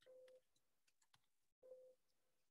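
Very faint computer-keyboard typing, scattered key clicks, with a short low beep that recurs about every second and a half.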